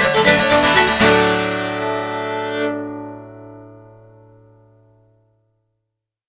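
Fiddle and acoustic guitar play the closing bars of an Irish song. About a second in, they land on a final chord that rings on and fades out, gone by about five seconds.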